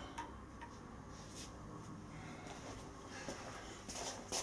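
A few faint, irregularly spaced clicks and taps from small objects being handled, against quiet room tone.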